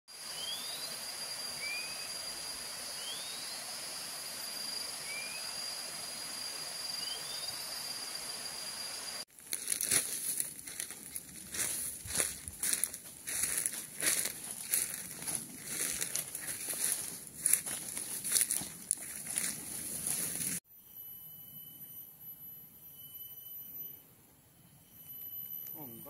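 Tropical forest ambience: a steady high insect drone with short rising bird chirps. About nine seconds in, irregular crunching and rustling of footsteps through leaf litter and undergrowth comes in over the drone for about ten seconds, then gives way to quieter steady high insect tones.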